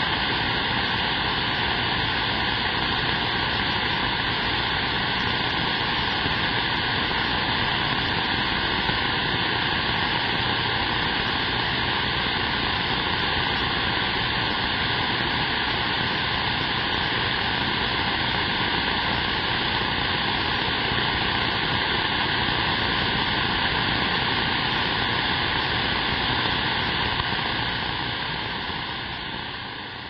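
Steady radio static from a receiver tuned to an open AM channel on 27.025 MHz (CB channel 6) with no station transmitting, fading out near the end.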